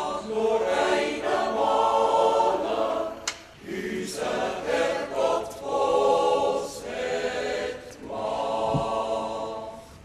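A choir singing long held chords, with a brief break about three and a half seconds in.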